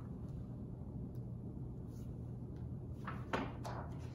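Quiet room tone with a low steady hum; near the end, a short rustle and flap of a hardcover picture book's page being turned.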